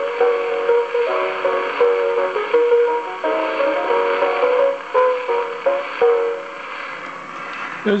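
Early Victor Monarch disc record played through a Victor Type III gramophone's horn: the piano accompaniment plays the closing bars, a melody of held notes over a steady hiss of record surface noise. The music fades out about six seconds in, leaving only the surface hiss.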